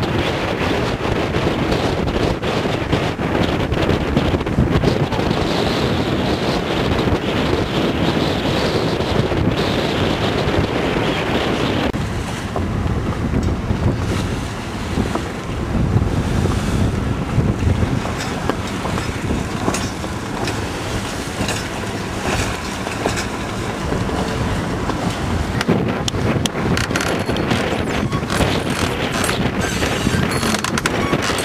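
Strong wind buffeting the microphone on the deck of a boat in choppy water, with waves washing alongside. The noise is loud and unbroken, and shifts in character about twelve seconds in.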